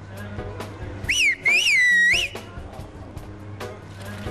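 Two-finger whistle: one loud, shrill call a little over a second long that glides up and down in pitch, then holds and lifts at the end. It is a whistled message telling people to dance. Background music with a steady beat runs underneath.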